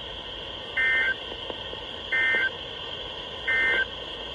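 Weather radio speaker giving three short, identical bursts of warbling two-tone digital data, a little over a second apart, over a steady background hiss. They are the EAS/SAME end-of-message code that closes the NOAA Weather Radio severe thunderstorm warning.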